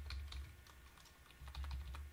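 Computer keyboard typing: a series of separate key clicks as a short word is typed.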